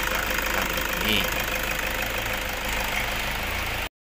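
Toyota Fortuner's diesel engine idling with the bonnet open, a steady clattering run heard close to the engine bay. It cuts off suddenly just before the end.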